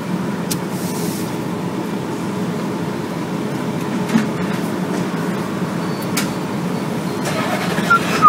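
Steady low rumble of a car idling, heard inside the cabin, with a few faint clicks.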